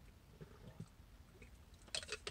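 Near silence with a few faint mouth clicks: a man sipping from a glass bottle of drink and swallowing.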